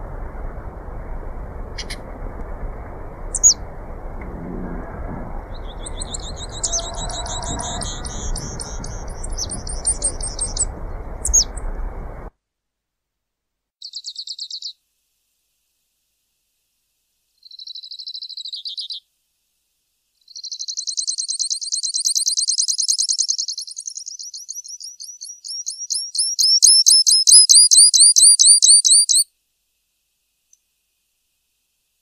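Grassland yellow finch singing: high chirps and fast, buzzy trills. A low background rumble runs under the song for the first twelve seconds and then cuts off abruptly. Clean, short trills follow, then long rapid trills, loudest near the end.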